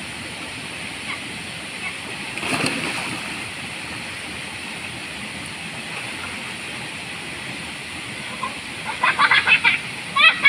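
Steady rush of water from a small waterfall and stream, with a splash about two and a half seconds in. Near the end, children's short high calls.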